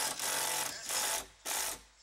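Cordless drill driving screws into a pine 2x4 frame corner, running in three short bursts as the screws go in.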